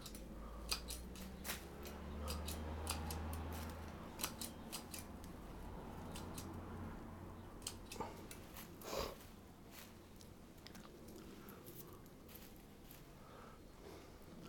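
Bonsai pruning shears snipping twigs and shoots off a Chinese elm: a quick, irregular series of faint clicks, thicker in the first half and sparser near the end. The cuts take off the winter shoots that stick out of the crown's outline.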